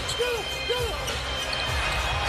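Basketball being dribbled on a hardwood court, about two bounces a second, over steady arena crowd noise.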